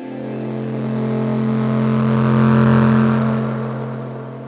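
Electronic bass music: a held, deep synth bass note that swells in loudness with a rising wash of noise, peaking about two-thirds of the way through, then fading.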